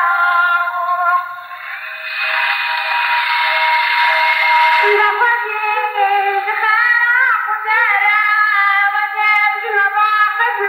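A woman singing a Kurdish folk song in an old, thin-sounding recording with no bass. The voice pauses about two seconds in, leaving a hissy held tone, and comes back about five seconds in.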